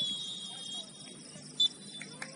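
Referee's whistle: a long steady blast through the first second, then a short, louder blast about a second and a half in.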